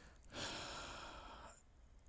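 A man's single audible breath close to the microphone, lasting about a second, in a pause between spoken sentences.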